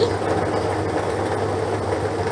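Three-chamber lottery ball draw machine running steadily, its balls being mixed for the next number.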